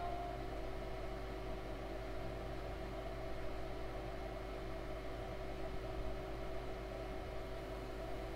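Steady low background hum and hiss with no distinct events: room tone picked up by the recording microphone.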